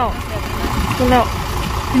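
A steady low rumble from a car's engine idling, with a woman's voice speaking a few words over it at the start and again about a second in.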